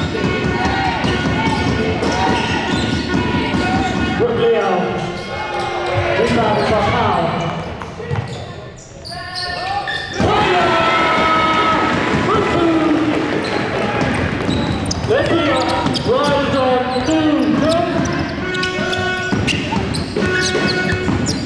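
A basketball bouncing on a wooden sports-hall court, with players and spectators shouting. The sound drops into a brief lull just before the middle, then comes back suddenly.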